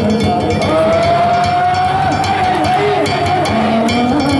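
A danjiri pulling song (hiki-uta) sung in long drawn-out notes, one note held for about two seconds in the middle, over festival percussion strikes.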